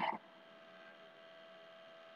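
Near silence with a faint steady hum, after a woman's voice trails off at the very start.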